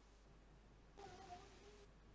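Near silence, with one faint, short, slightly wavering cry about a second in.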